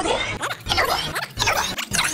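General Grievous's gravelly, electronically processed voice making a rapid string of short rasping vocal bursts, about three a second.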